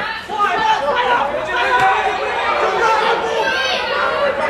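Football spectators chattering, several voices overlapping, with no single clear speaker.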